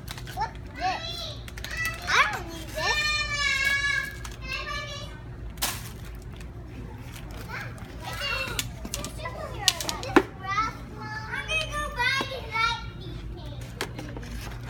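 A young girl's high voice chattering and calling out without clear words, with one long held sing-song call about three seconds in. A few sharp knocks, the loudest about ten seconds in, and a steady low hum run underneath.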